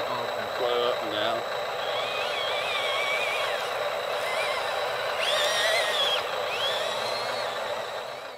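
Birds chirping in short rising and falling calls through most of the clip, over a steady high-pitched tone. A faint voice is heard in the first second and a half.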